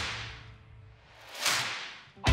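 Guitar-driven background music dies away, then a single whoosh sound effect swells up about one and a half seconds in and fades out.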